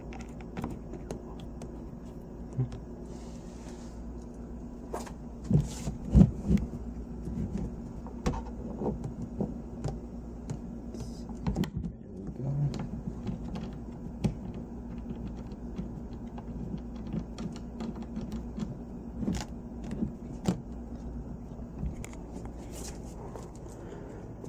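Countertop pieces being handled and screws turned in by hand: irregular light clicks and knocks, a few louder thuds, over a steady low hum.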